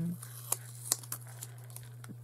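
A folded piece of white cardstock handled and turned between the fingers, giving a few light papery rustles and small ticks.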